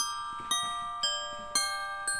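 Christmas background music of ringing, bell-like notes, a new note about twice a second.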